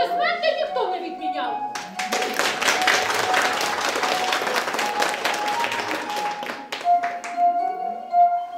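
Hands clapping for about five seconds, starting about two seconds in, over background music with a long held note.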